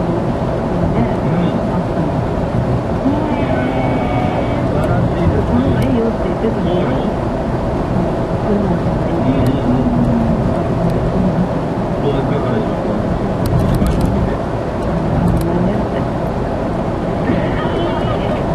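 Steady road and engine noise inside a car cruising on a highway, with indistinct talk running underneath.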